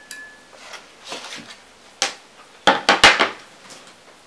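A clear plastic stay-wet palette box being handled and set down: a single sharp knock about halfway through, then a quick cluster of clattering knocks near the end.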